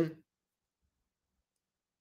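A man's speaking voice finishing a word at the very start, then near silence for the rest.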